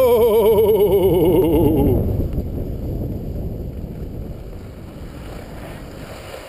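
Skis sliding on groomed snow with wind rushing over the microphone, fading away as the skier slows down. For the first two seconds a person's voice holds a long wavering note that falls slightly in pitch.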